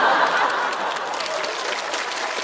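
Studio audience applauding, loudest at the start and easing off a little.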